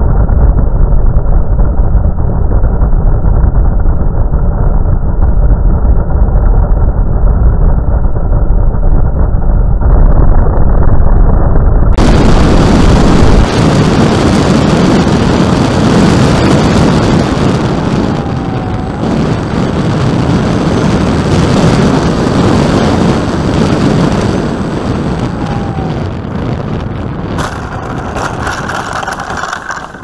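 Loud wind rush and propeller noise on a camera mounted under a radio-controlled model plane in flight. The noise eases off over the last few seconds as the plane comes in to land, then drops away at the very end.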